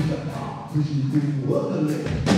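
Live rock band in a vocal break: sung voices hold pitched notes over thin accompaniment, with the drums and bass dropped out.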